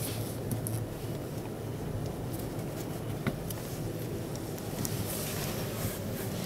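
Steady background din of a busy exhibition hall, with a few faint clicks.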